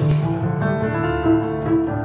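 Instrumental jazz passage: a Korg digital piano playing held chords over an upright double bass.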